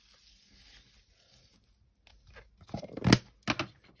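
Near-silence, then a cluster of short rustling, scraping sounds about three seconds in, the loudest just after three seconds: paper card and loose gilding flakes being handled and swept on a craft cutting mat.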